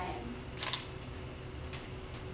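A short sharp click about two-thirds of a second in, with a couple of fainter ticks near the end, over a steady low room hum.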